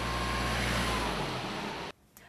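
Ford Transit fire-brigade van driving along a wet road: steady engine hum with tyre hiss on the wet asphalt, cutting off suddenly near the end.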